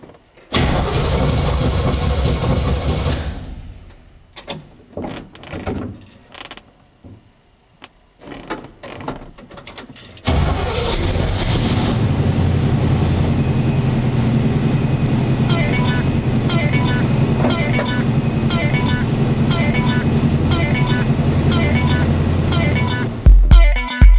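Buick 455 big-block V8, bored out to 502 cubic inches, starting up. It runs loudly for about three seconds and falls away, gives a string of short bursts, then settles into steady running from about ten seconds in.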